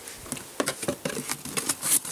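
Rustling, crinkling and light clicks of packaging being rummaged through by hand, in search of mounting screws.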